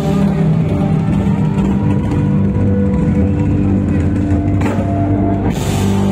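A live band playing loud music with drums, heard from the stage.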